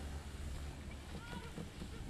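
Wind rushing over the microphone and skis scraping through mogul snow while skiing downhill, a steady rush over a low rumble.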